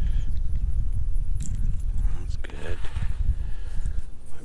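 Wind buffeting an outdoor microphone: a loud, uneven low rumble with no clear rhythm.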